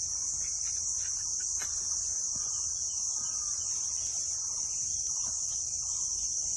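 A steady, high-pitched insect chorus buzzing without a break, with a faint low rumble beneath.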